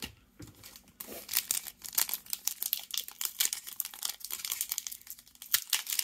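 Foil Pokémon TCG booster pack wrapper crinkling and tearing as it is handled and ripped open: a dense run of sharp, irregular crackles starting about a second in.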